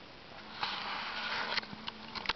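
A person sniffing in through the nose close to the microphone, one breathy sniff of about a second, followed by a few small sharp clicks.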